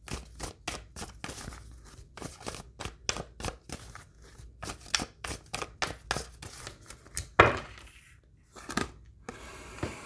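A deck of tarot cards being shuffled by hand: a quick, irregular run of crisp slaps and flicks of card stock, with one louder slap about seven and a half seconds in.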